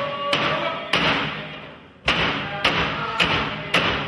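Alaska Native frame drums struck in sharp, even beats, with a held singing voice over the first strokes; the drumming breaks off for about a second midway, then resumes at about two beats a second.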